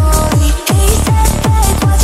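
Hypertechno dance track: a fast, steady kick drum with a synth melody over it, the beat dropping out for an instant about half a second in.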